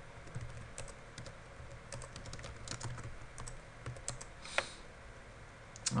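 Computer keyboard typing: light, irregular keystrokes, with one short, slightly louder sound about four and a half seconds in.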